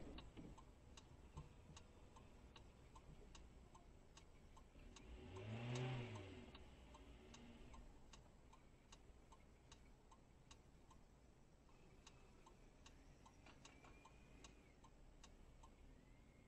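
Near silence with faint, regular ticking about twice a second. A brief low hum rises and falls in pitch about six seconds in.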